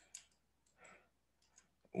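A few faint, short clicks and one soft, brief noise between them, in an otherwise near-silent pause.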